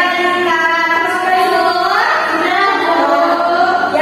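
A song with a woman's singing voice, long held and gliding notes at a steady level.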